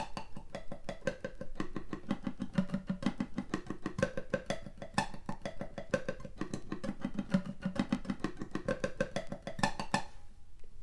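Steel-string acoustic guitar picked with a flatpick in steady alternating down-up strokes, a continuous stream of single notes moving across the strings.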